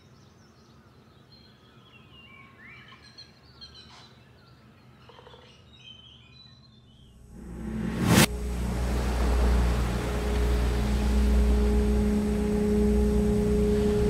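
Film sound design: faint bird chirps over quiet room tone, then, about eight seconds in, a rising swell that ends in one sharp hit. After the hit comes a loud steady low rumble with a held drone tone.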